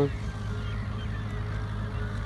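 Farm tractor engine running with a steady low drone while pulling a field implement across dry soil.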